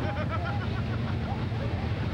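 A vehicle engine running with a steady low hum, with a crowd's voices chattering over it.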